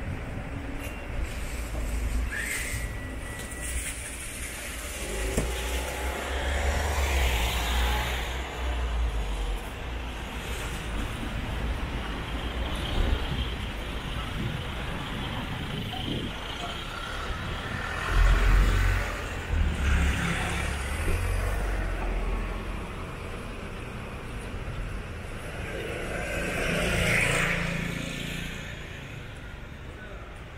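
City street traffic: a steady rumble of road vehicles, with cars swelling louder as they pass several times. A brief high tone sounds about two seconds in.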